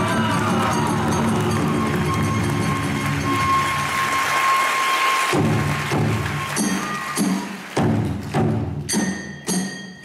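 Live kagura hayashi accompaniment of drums, hand cymbals and a bamboo flute playing densely with a held flute note. About halfway through it thins to separate drum-and-cymbal strikes, about two a second, each leaving a metallic ring.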